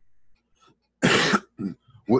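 A man coughs once, a short harsh burst about a second in, with a couple of small sounds after it.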